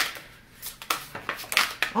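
A deck of oracle cards being shuffled by hand: a handful of separate sharp card flicks and taps, spaced out, in a quieter stretch after denser shuffling.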